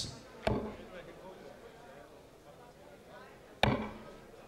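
Two darts striking a Blade 4 bristle dartboard, each a single sharp thud, about three seconds apart; the second is the louder.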